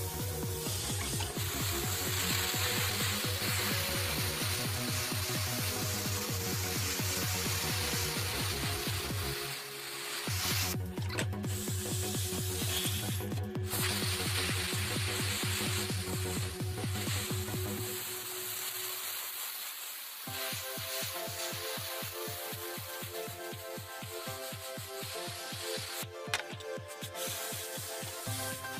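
Electronic background music with a steady beat; the bass drops out for a moment about two-thirds of the way through, then the beat returns.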